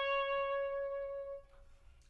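Solo oboe holding one long note that tapers off and stops about one and a half seconds in.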